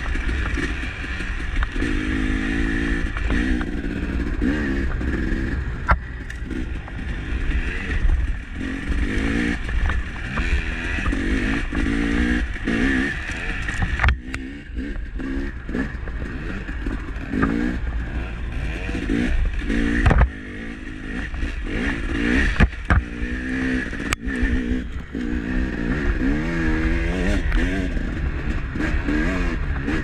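Dirt bike engine being ridden, its pitch rising and falling again and again as the throttle opens and closes, with a few sharp knocks and clatter along the way.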